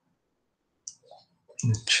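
A pause with a short faint click about a second in, then a man starts speaking near the end.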